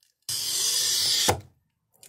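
Toyo TC90 glass cutter scoring a 1 cm thick glass sheet wetted with kerosene. The wheel makes a steady high hiss for about a second as it runs along the glass, ending in a sharp click.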